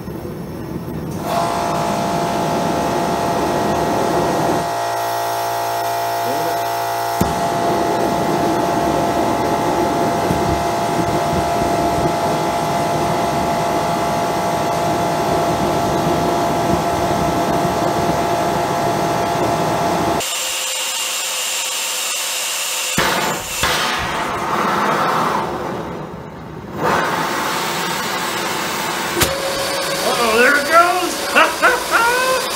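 Small industrial micro burner firing while a handheld gas torch is held to it: a loud, steady rushing hiss with a whistling tone. About two-thirds of the way through the whistle stops and a thinner, higher hiss remains.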